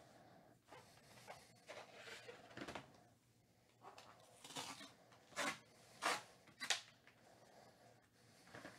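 Fingers picking at and peeling a strip of sealing tape off a cardboard box. It comes as a quiet run of short scraping rips, with the four loudest falling between about four and seven seconds in.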